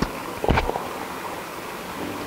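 Metal screw cap of a wine bottle being twisted open: a click as it starts to turn, then a short crackle of clicks about half a second in as the cap's seal breaks.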